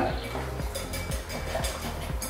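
Hot water poured from an electric kettle into a glass bowl of instant cake glaze while it is stirred, with faint light clinks, over background music.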